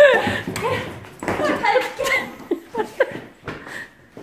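Excited voices, with laughter and wordless exclamations, and a few sharp knocks in the second half.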